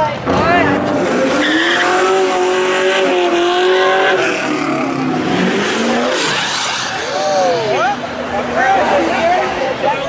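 A car doing a street burnout: engine held at high revs with the tires squealing for a few seconds, the revs falling away around the middle.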